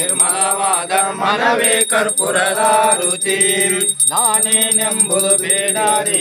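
Devotional chanting sung in a melodic voice, with a steady high-pitched ringing behind it.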